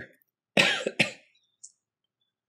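A man coughs twice in quick succession, clearing his throat, then a faint short click near the end.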